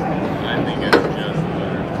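A single sharp metal clank about a second in, as the steel bending die is lifted off the electric pipe bender. Steady background chatter runs under it.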